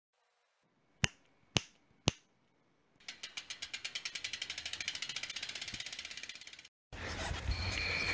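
Three sharp clicks about half a second apart, then a bicycle freewheel ticking rapidly, about eleven clicks a second, growing louder and then fading as the wheel spins down. Near the end, steady outdoor road and wind noise comes in.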